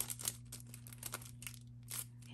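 Paper banknotes and a clear plastic cash envelope crinkling and rustling in the hands: a quick run of small crackles, busiest in the first second.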